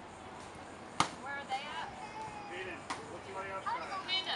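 A plastic bat hitting a piñata: one sharp whack about a second in, then a lighter knock near three seconds.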